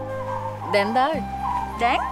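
Background score with long held notes that shift to a new chord about a second in, with two short, high, sliding calls laid over it, one about a second in and one near the end.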